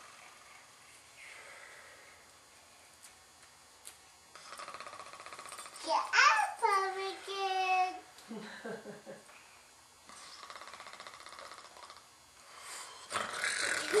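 A small child's voice calls out once in a sliding, sing-song call about six seconds in, followed by a man's low murmur; louder laughter and voice begin near the end. Otherwise the room is quiet.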